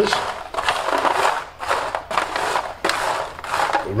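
A metal spoon stirring freshly roasted almonds in an aluminium foil tray: about six rattling, scraping strokes of the nuts against the foil at a steady pace.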